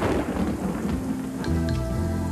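Thunder rumbling with rain, a storm sound effect, under background music whose sustained chords come up about one and a half seconds in.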